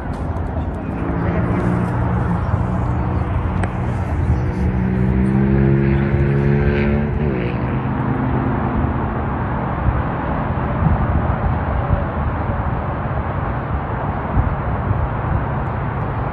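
Distant highway traffic heard from a hilltop: a steady rush of tyres and engines. From about a second in, one engine's hum stands out, slowly rising in pitch, then falls away about seven seconds in.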